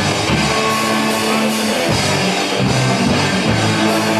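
Live rock band playing: electric guitars with held low notes over a drum beat.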